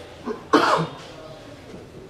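A person coughing once, loudly, about half a second in, with a short throat sound just before.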